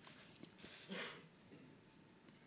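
Near silence: room tone in a pause between sentences, with a faint brief sound about a second in.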